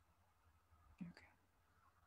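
Near silence of a video call, broken by one brief faint vocal sound, a short murmur with a small click, about a second in.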